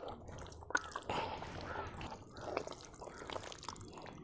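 Hands squelching through wet mud and muddy water in a metal basin, with small irregular splashes and drips.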